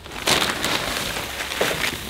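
Dry wood shavings rustling and crunching as handfuls are scooped from a plastic bag and scattered onto the barn floor, starting about a quarter second in.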